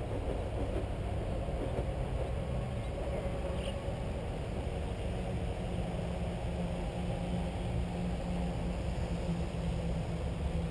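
Steady low rumble of a distant motor, with a low hum that grows stronger about halfway through.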